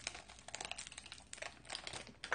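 A wafer bar's wrapper crinkling as it is peeled open by hand, with many quick irregular crackles.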